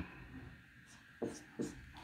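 Marker pen writing on a whiteboard: two short, faint strokes a little over a second in.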